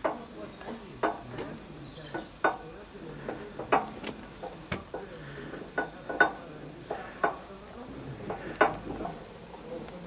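Sleeve operating levers on a Brotherhood sleeve-valve engine's layshaft clinking and knocking irregularly, metal on metal, about one or two knocks a second, as the layshaft is turned over and the levers go in and out.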